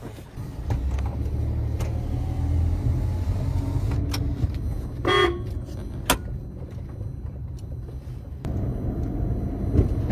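Car engine and road rumble heard from inside the cabin as the car drives off. A short horn toot comes about five seconds in, followed by a single click a second later.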